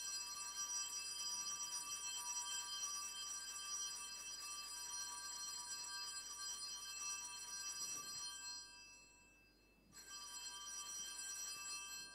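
Altar bells ringing a sustained high jingle of many steady tones as the consecrated host is raised at Mass. The ringing stops at about eight and a half seconds, then starts again for a shorter second ringing about ten seconds in.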